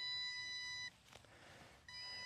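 Electronic warning beeps from the MJX Bugs 19 EIS drone's remote controller. A steady beep about a second long stops, then starts again about a second later: the low-battery alarm after the drone's battery has run down.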